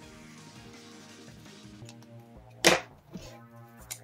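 Background music, with one loud sharp click about two and a half seconds in and two lighter clicks after it, from plastic marker pens being handled as one dual-tip marker is swapped for another.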